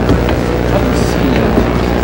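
A steady low electrical hum from an old videotape recording, under the indistinct murmur of a large audience in a lecture hall.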